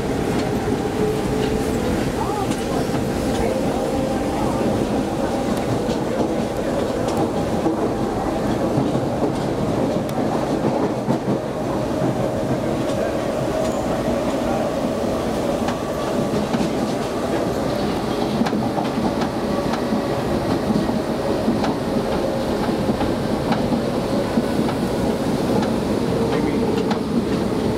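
Interior of a former Tokyo Marunouchi Line subway car running on Buenos Aires Line B: a steady rumble of wheels on rail with faint rail-joint clicks and a whining tone that drifts slightly in pitch.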